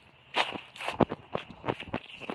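Footsteps on grass: a run of uneven steps with some rustling, the sharpest about a second in.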